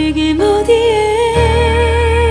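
Slow ballad: a female voice holds a long sung note with vibrato, stepping up in pitch about half a second in, over sustained accompaniment. A deep bass note comes in about halfway through.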